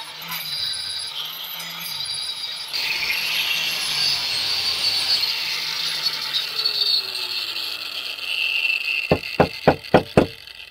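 Angle grinder cutting down rounded nuts on a car's gearbox bracket support, a steady high grinding whose pitch drops near the end. In the last second, a ratchet wrench clicks about three times a second.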